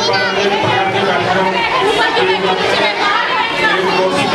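Speech: a man talking into a handheld microphone over a dense chatter of many other voices talking at once.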